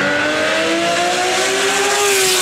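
A steady engine-like drone slowly rising in pitch, with a hiss over it: an accelerating-vehicle sound effect.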